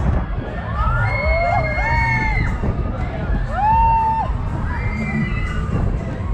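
Riders on a swinging pendulum fairground ride screaming and whooping: several long, high cries from different voices, rising and falling, overlapping through the swing. A steady low rumble runs underneath.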